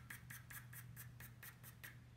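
2B graphite pencil flicking quick short strokes on drawing paper, a faint run of scratches about seven a second that stops near the end.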